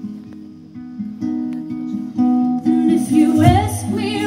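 Acoustic guitar fingerpicked in a repeating pattern that grows fuller partway through. About three seconds in, a low bass note and a melody line with gliding, bending notes join it.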